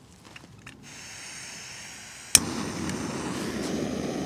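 Jetboil gas camping stove being lit: the gas valve opens with a faint hiss, then a sharp igniter click a little over two seconds in, after which the burner runs with a steady, louder rushing sound.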